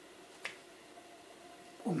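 Quiet room tone broken by a single short, sharp click about half a second in.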